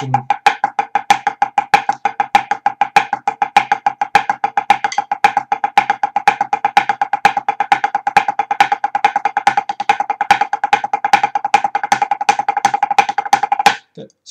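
Pipe band snare drumsticks playing a paradiddle warm-up: a steady, even stream of crisp strokes, several a second, with regularly recurring accents. The playing stops just before the end.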